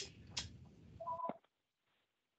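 A phone ringing on an unmuted line in a video call: one short, faint two-tone ring about a second in.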